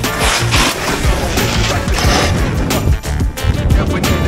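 Background music with a heavy, steady beat.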